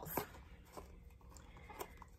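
Faint, scattered light taps and rustles of a small advent calendar box being handled.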